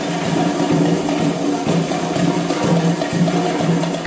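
Samba percussion: surdo bass drum and tamborim playing a dense, steady samba beat.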